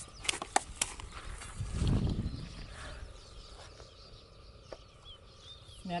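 Faint, high bird chirps in open country, with a few sharp clicks and scuffs of feet and a shovel in the dirt in the first second and a low rumble about two seconds in.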